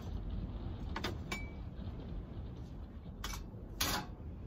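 A metal muffin tin and knife clinking as shortbread is lifted out and the tin is put down: a few sharp metallic clicks, the loudest clatter just before the end, over a low steady rumble.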